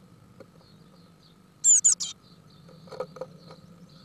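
Nestling birds in a nest box give a brief burst of shrill, rapid high-pitched chirps about halfway through, typical of begging while an adult is at the nest. A few light scratches and taps of claws on the wooden box follow, over a faint steady hum.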